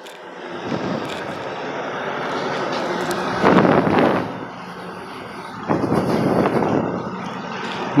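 Street traffic noise: motor vehicles running and passing close by, building up in the first second or so and loudest a little past the middle, with a second swell near the end.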